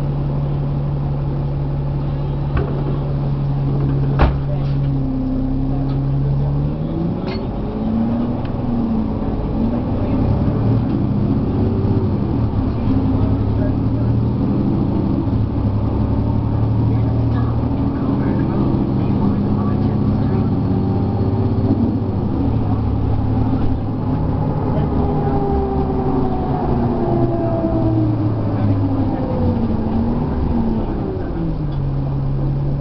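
Diesel engine of an articulated city bus (Cummins ISL9 inline-six with a ZF automatic transmission) idling at a stop, with a single knock about four seconds in. From about six seconds in, the bus pulls away: engine pitch climbs, drops at each upshift and climbs again several times as the bus gathers speed, heard from inside the passenger cabin.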